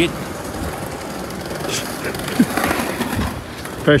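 Street ambience with a single sharp clack of a skateboard hitting the pavement about two and a half seconds in, as a skater lands a drop over a tall rail into the street.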